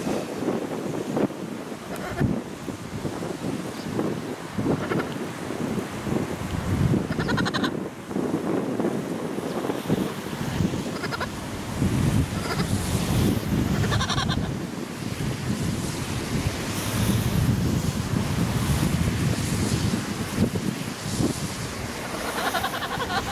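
Wind buffeting the microphone in a continuous low rumble, broken by a few short, high calls about 7 seconds and 14 seconds in.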